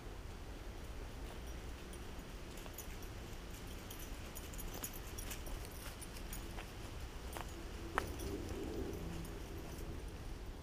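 Quiet woodland ambience with a low rumble on the microphone and faint rustling and ticks of footsteps on dry leaf litter as a person and a dog move close by. A single sharp click comes about eight seconds in, followed by a brief low whine.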